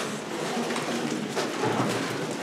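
Indistinct murmur and rustling of a seated audience in a room, with no one speaking clearly.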